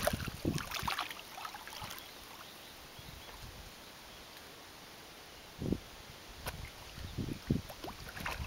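A dog splashing through shallow pond water as it wades in, then quieter paddling while it swims, with a few more splashes near the end as it reaches the far bank.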